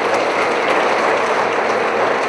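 An audience applauding, a steady dense clapping.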